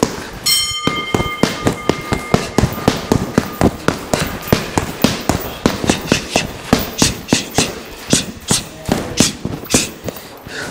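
Boxing gloves punching a heavy hanging bag in fast, continuous combinations, several sharp thuds a second.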